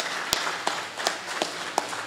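Group clapping, with loud single claps close to the microphone at a steady beat of about three a second.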